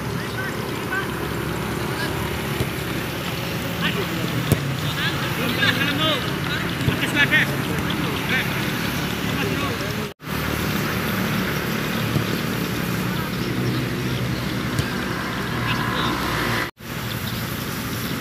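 Live sound of an outdoor football match: voices calling and shouting on and around the pitch over a steady background noise, with a sharp knock about four and a half seconds in. The sound cuts out briefly twice, near ten and seventeen seconds in.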